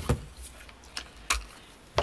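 A few light clicks and taps as a clear acrylic quilting ruler is set down and positioned on fabric over a cutting mat.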